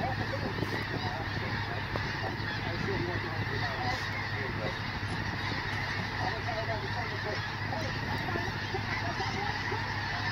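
A huge flock of snow geese calling overhead: a dense, unbroken din of many overlapping honking calls, with a steady low hum underneath.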